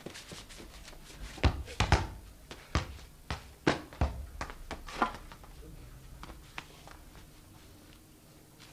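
Heavy footsteps and thumps on a stage floor: a string of irregular knocks, densest between about one and five seconds in, then tapering off.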